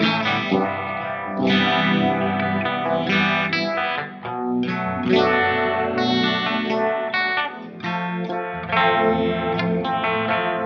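A Burns short-scale Jazz electric guitar prototype with Tri-Sonic pickups, played through an amplifier: chords picked and strummed, a new chord every second or two, each left to sustain.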